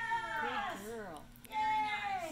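Two long, high-pitched excited vocal calls, each falling in pitch. The second one starts about a second and a half in and is the louder of the two.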